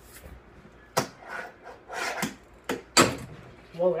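Fingerboard clacking on a countertop: a few sharp clacks about a second in and near three seconds, with scraping between them.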